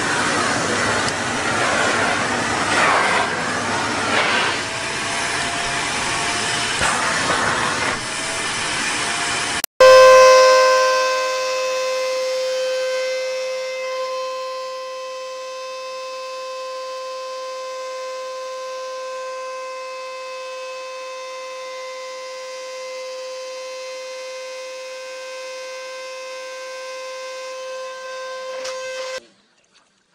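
Vacuum cleaners running. For the first ten seconds there is a dense, noisy rush of suction. After that comes a steady, even-pitched motor whine with overtones, loud at first, then settling quieter before it stops abruptly near the end.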